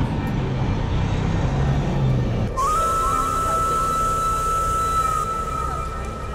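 Street traffic with a low engine hum for the first two and a half seconds, then music cuts in: a single high, whistle-like note that slides up and holds.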